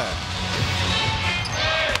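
Indoor basketball game sound: a steady crowd and arena background with music, and court sounds of play such as shoes and the ball on the hardwood.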